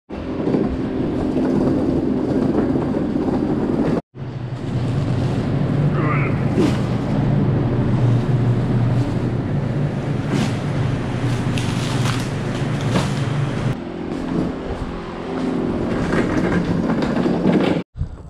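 Produce being moved on a hand truck across a concrete floor: rattling, knocks and rustling of handling. From about 4 s in, a steady low machine hum runs under it for about ten seconds.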